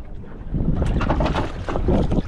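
Wind buffeting the microphone on a boat at sea, a low rumbling that grows louder about half a second in, with short splashes of water as a hooked fish is brought alongside.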